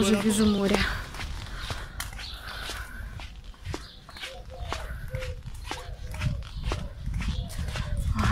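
A song ends within the first second, then wind buffets the microphone with a low, uneven rumble while the camera is carried along on foot, with faint, scattered footstep taps.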